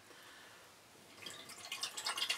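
Near silence, then about a second in a non-carbonated fruit punch drink starts pouring from a can onto ice cubes in a glass, faint and irregular.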